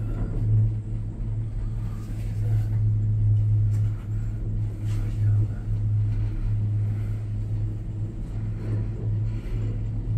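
Steady low hum and rumble inside a cable-car gondola cabin as it travels along the rope.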